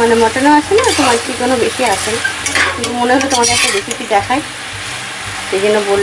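Spice-coated mutton pieces sizzling as they fry in a pot, stirred and turned with a spatula that scrapes against the pan.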